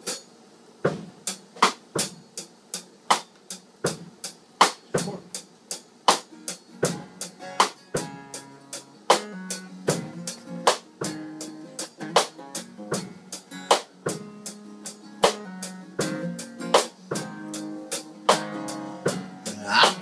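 Drum kit playing a steady beat, with acoustic guitar chords joining and filling in several seconds in, as a song intro.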